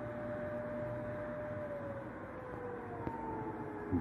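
An air-raid siren sounding an alert during a missile strike: one long held tone that slowly falls in pitch, over a steady background hiss.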